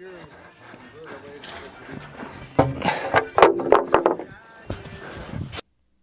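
Men's voices talking in the background, with a few faint knocks, cutting off suddenly near the end.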